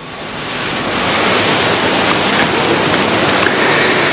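Audience applauding, swelling over the first second and then holding steady.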